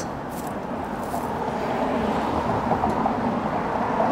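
Steady outdoor background noise like distant road traffic, with a few faint clicks.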